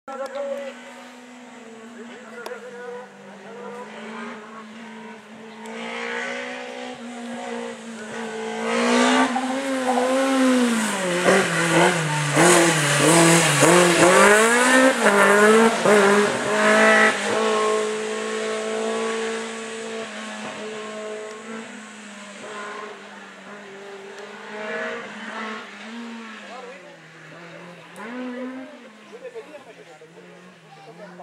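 Single-seater open-wheel race car engine revving up and down again and again as the car weaves through a slalom course. It is loudest in the middle, as the car comes close, then fades to a steadier, quieter note.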